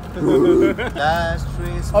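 Men's voices giving wordless vocal sounds, then laughing near the end, over a steady low hum of city street noise.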